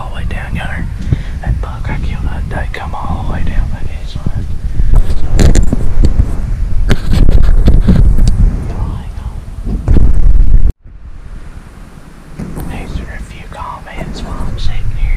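Handling noise from a camera being moved about: heavy low rumbling and rustling against the microphone, with a man whispering. It cuts out abruptly about three-quarters of the way through, then comes back quieter.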